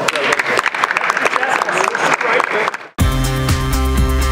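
Audience applauding, with crowd voices mixed in, until the sound cuts off abruptly about three seconds in and music with a regular beat starts.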